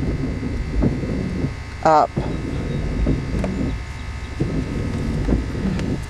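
Low steady rumble inside a car, with faint ticks of a pen writing on a paper napkin.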